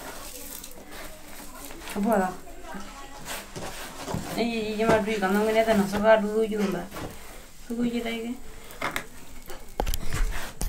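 Speech in short stretches, the longest about halfway through, with faint clicks and rustling between.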